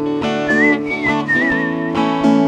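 Acoustic guitar strummed in a steady rhythm. From about half a second in, a short whistled melody plays over it and ends on a wavering held note.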